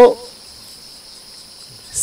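Steady, faint, high-pitched insect chirring in the background during a pause in speech, with the end of a man's spoken word at the very start.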